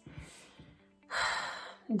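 A woman's audible breath, a short rush of air lasting under a second, about halfway through.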